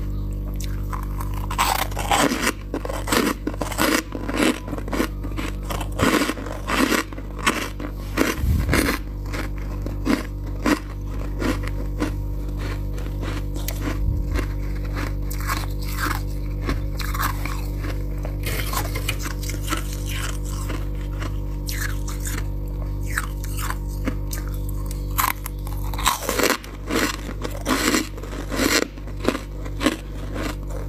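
Freezer frost being bitten and chewed, a run of crisp crunches that come thick for the first nine seconds, thin out through the middle and bunch up again near the end, over a steady low hum.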